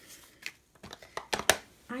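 A few light clicks and taps of paper and cardstock being handled and laid down on a desk, the sharpest about a second and a half in.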